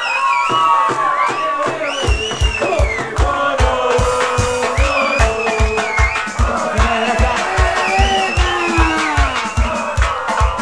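Live cumbia villera band playing: a gliding, wavering lead melody, joined about two seconds in by a steady bass-drum beat of about two and a half beats a second.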